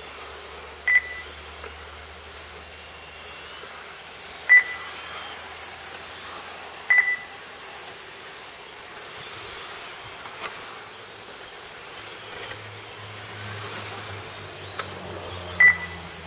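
Electric 1/10 touring RC cars lapping the track, their motors giving thin high whines that rise and fall as they accelerate and brake. Four short electronic beeps from the lap-timing system sound as cars cross the line, over a steady low hum.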